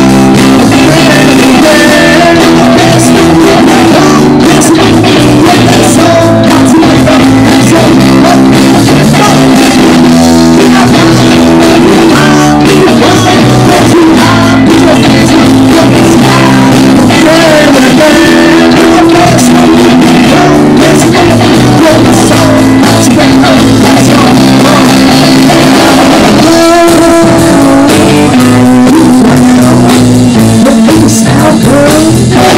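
Live rock band playing loud: electric guitar, bass guitar and drum kit, with a vocalist singing through a handheld microphone over the PA.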